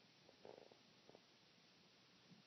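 Near silence: room tone, with a couple of faint, brief soft sounds about half a second and a second in.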